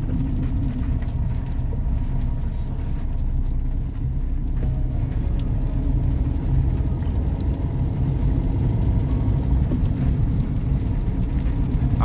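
Steady low rumble inside a moving car's cabin: engine and tyres running on a wet road.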